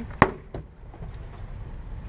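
A sharp snap about a quarter second in, followed by a fainter click: a plastic retaining clip of a 2006 Scion xB's door trim panel popping loose as the panel is pulled away from the door.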